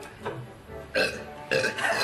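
A person burping after gulping carbonated beer: a short burp about a second in, then a longer, louder one near the end.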